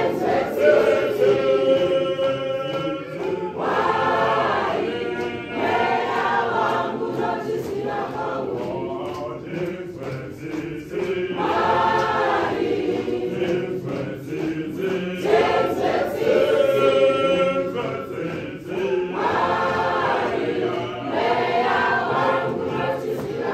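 A church choir singing a marching processional song, many voices together, with louder phrases coming round again every several seconds.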